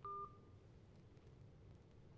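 A single short electronic phone beep, about a quarter of a second long, right at the start, followed by near silence: the tone of a phone call being ended.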